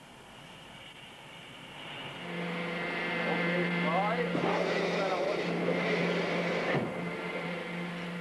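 A steady mechanical hum with a hiss above it. It comes up about two seconds in and drops off sharply near seven seconds.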